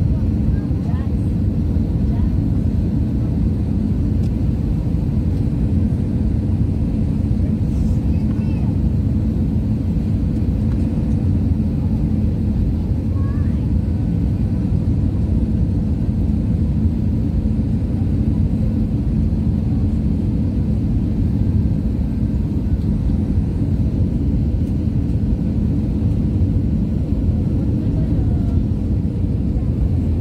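Airliner cabin noise on final approach and landing: a steady low roar of the jet engines and rushing air heard from inside the cabin, with no clear change in level.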